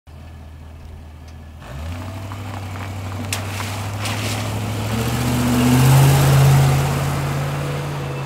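1994 Range Rover Classic's 3.9-litre Rover V8 idling, then pulling away about two seconds in and accelerating past, its engine note rising. Tyre noise swells to the loudest point around six seconds in, then fades as the car drives off along the wet road.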